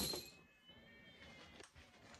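A sharp clack with a brief metallic ring as exercise bands are handled and set down, followed by a faint, high, wavering cry lasting about a second.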